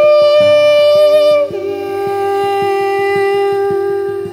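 A long, wordless sung note over fingerpicked acoustic guitar in a folk song; about one and a half seconds in, the note steps down to a lower pitch and is held to the end.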